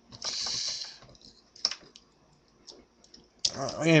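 Plastic toy parts handled and fitted together: a short scraping rustle, then a sharp click about one and a half seconds in and a few lighter ticks.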